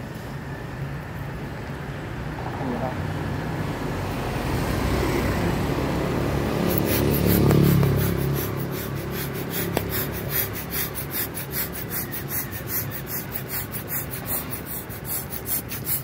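Handheld plastic balloon pump worked in quick strokes, about three a second, pushing air into a foil balloon that is being filled only until just taut. Under it a low traffic rumble swells loudest about halfway through.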